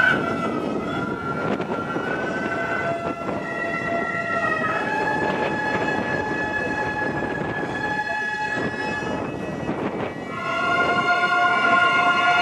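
Gagaku music accompanying bugaku dance: shō mouth organ and hichiriki reeds holding long steady notes that step to new pitches every few seconds. The sound dips briefly about ten seconds in and comes back louder.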